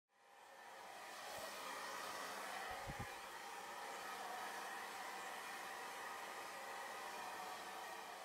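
A faint, steady hiss-like noise fades in over the first second. A soft low thump comes about one and a half seconds in, and a couple more about three seconds in.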